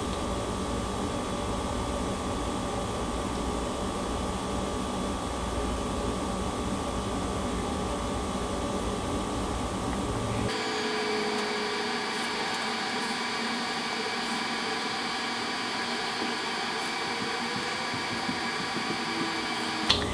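Steady background hum and hiss of room noise, with several steady tones, like a fan or air conditioner running. About halfway through the noise changes abruptly: the low rumble drops away and a different set of tones takes over.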